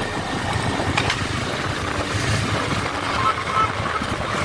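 Motorcycle engine running while riding along a road, with steady road noise and a brief click about a second in.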